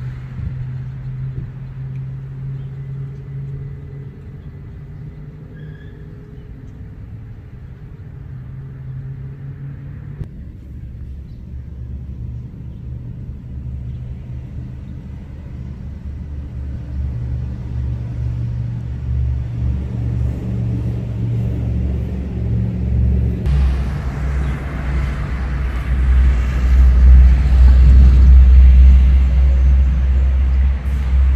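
Road traffic rumbling on a nearby street, low and steady, changing abruptly twice. Near the end a delivery box truck drives past, and its deep rumble is the loudest part.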